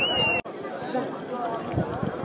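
A whistle blast, likely the referee's, high and warbling before it settles to a steady pitch, cut off abruptly less than half a second in. Crowd chatter follows.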